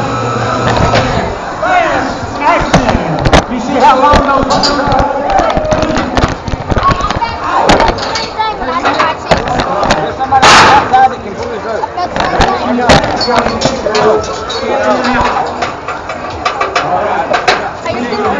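Indistinct voices shouting, over many knocks and rattles close to the microphone, with one loud bang about ten and a half seconds in.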